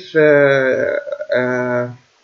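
A man's voice making two drawn-out, steady-pitched hesitation sounds, each about half a second long, the way a speaker holds a vowel while thinking mid-sentence.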